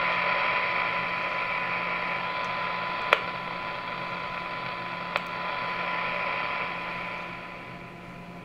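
A Super Star SS-158FB4 CB radio's speaker plays a very weak, fully modulated signal-generator signal: a steady test tone heard through receiver static. This shows the receiver still picking up a signal at 130. Two faint clicks come about three and five seconds in, and the static eases off near the end.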